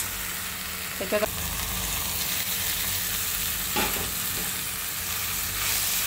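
Chopped greens and peanuts frying in a steel pan with a steady sizzle, while a spatula stirs them.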